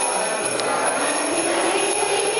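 Children's choir singing with jingle bells shaking steadily along with the song.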